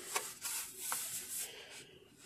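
Hands handling a wood-PLA 3D print on tree supports on a textured printer bed: faint rubbing and a few light clicks of plastic.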